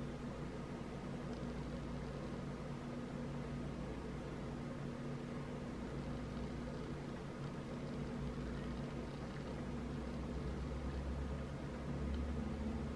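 Steady low background hum with a faint even hiss, unchanging throughout, with no distinct events.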